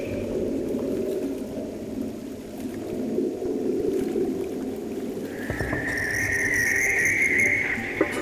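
Film soundtrack sound design: a low, rough, rumbling drone, joined a little past halfway by a high, steady whistling tone that holds for about two and a half seconds.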